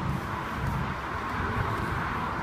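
Steady outdoor background noise with a low, uneven rumble.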